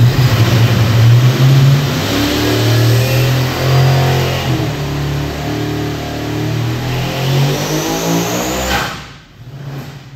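Supercharged 555-cubic-inch big-block Ford V8 on methanol making a full-throttle dyno pull. The engine note climbs in pitch as the revs rise, and the centrifugal blower's whine rises over it. About nine seconds in the throttle shuts and the sound drops away abruptly.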